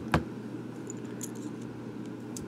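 Ballpoint pens being handled and set down on a cutting mat: one short click just after the start, then a few faint light taps, over a steady low hum.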